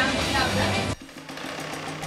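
A man's voice on a recorded video message, over a steady hiss, that cuts off abruptly about a second in. After that there is only quieter room tone with a faint low hum.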